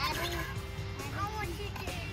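Faint children's voices in the background, with music underneath.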